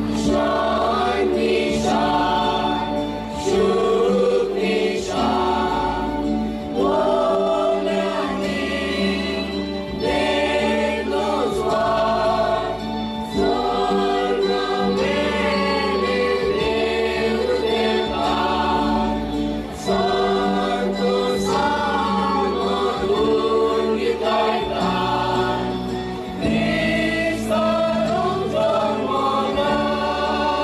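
Mixed choir of women's and men's voices singing a Christmas carol together, the chords changing every second or two.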